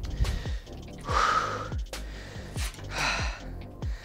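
Background music with a steady bass beat, and two loud breaths from a man catching his breath between workout sets, about one second and three seconds in.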